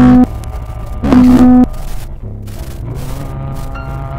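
Heavily distorted, clipping music: a man's loud held sung note over a guitar cuts off just after the start, a second loud held note comes about a second in, then a quieter sustained chord rings on.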